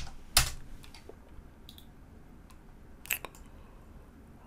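Scattered clicks of a computer keyboard and mouse, a few separate strokes with the two sharpest about half a second in and about three seconds in.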